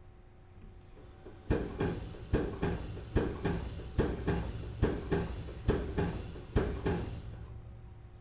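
Test pump of a hydrostatic cylinder test console working in strokes, a pair of sharp clicks roughly every second, with a faint high hiss while it runs. It is building water pressure in the cylinder under test, up from 2,000 psi toward 3,000 psi, and stops about seven seconds in.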